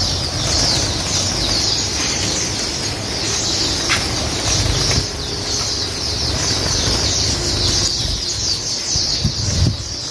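Gouldian finches fluttering and flapping their wings in a wire aviary cage, over a steady, dense high chorus of many small caged birds chirping.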